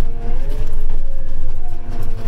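Engine of an Apache self-propelled sprayer running under load, heard inside the cab, with a strong low rumble. About half a second in, its pitch dips and bends as the powershift transmission changes gear, then it settles back to a steady run.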